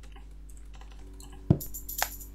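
Faint light clicks, then about three-quarters of the way through a single loud thump, after which a small hand-held toy shaker starts rattling with a bright, high ringing edge.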